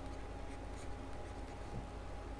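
Faint scratching of a stylus writing on a tablet, over a steady faint whine and low electrical hum.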